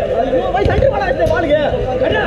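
Several boys' voices shouting and calling to each other during play, overlapping, over a steady hum.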